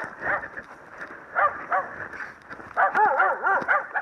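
A dog barking in short, quick barks: one near the start, two about a second and a half in, then a rapid run of about six barks from just before three seconds.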